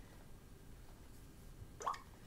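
Faint room tone, with one brief short rising sound near the end.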